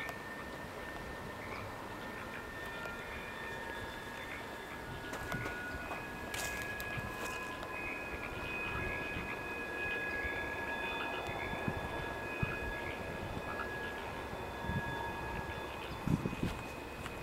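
A distant diesel freight train with four locomotives running past, a steady rumble with thin, high steady squeals drawn out over it.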